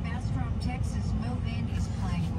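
Steady low rumble of a Ram pickup's engine and drivetrain heard inside the cab while the truck creeps in slow traffic, with faint talking over it.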